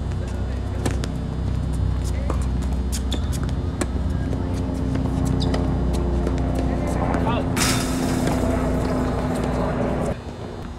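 Tennis rally: a racket strikes the ball on a serve about a second in, followed by more sharp hits and bounces every second or so, over a steady low hum. A loud rushing hiss takes over for the last couple of seconds.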